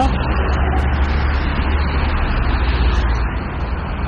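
Steady road traffic noise from cars passing on a busy road, with a strong low rumble.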